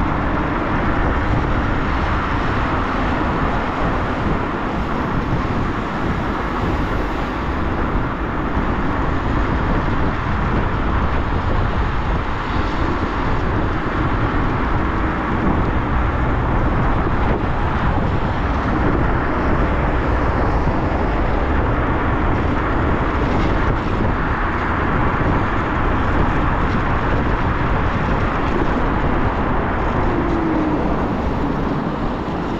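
Steady rush of wind and road noise from riding an electric scooter at speed, the wind buffeting the microphone and filling the low end.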